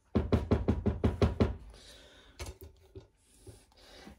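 A spatula rapped quickly against the edge of a glass baking dish to knock off clinging dry cake mix: about ten fast knocks in the first second and a half, then two more a second later.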